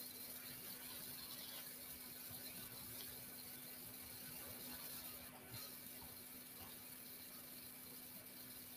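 Quiet room tone: a faint steady hiss with a low hum, and a faint soft handling sound about five and a half seconds in.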